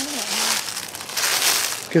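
Footsteps crunching through dry fallen leaves, a few steps in quick succession.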